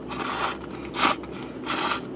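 A person slurping udon noodles off chopsticks: three slurps in quick succession, the first the longest.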